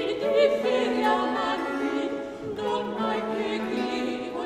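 Several opera voices singing together in Baroque style over a held low note, with a short break a little past halfway.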